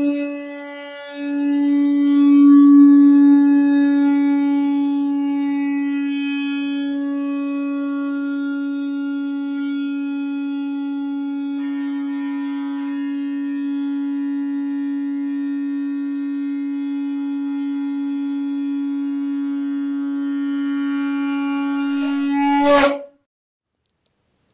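A blown horn sounding one long steady note, held for over twenty seconds with a brief break about a second in, swelling just before it cuts off suddenly near the end.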